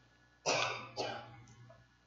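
A person coughing twice, the first cough louder than the second.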